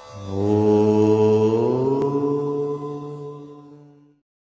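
Logo intro music sting: one deep, sustained tone rich in overtones that swells up quickly, holds, with its upper overtones gliding slightly higher about two seconds in, then fades away and stops.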